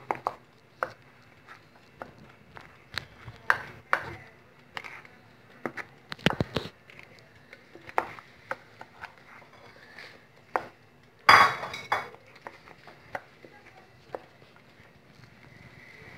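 A utensil stirring a thick chocolate cream in a bowl, giving scattered light clicks and knocks against the bowl, with one louder scrape about eleven seconds in.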